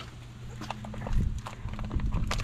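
Scattered light clicks and knocks from handling around an open car door and back seat, growing busier about halfway through. Low thumps of wind or handling on the microphone and a faint steady hum lie underneath.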